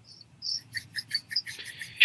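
A quick run of faint, light clicks, several a second, ending in a short breathy hiss just before speech.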